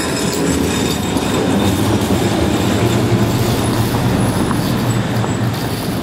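A tram running along street rails: a steady low rumble, with a few thin, high wheel squeaks in the second half.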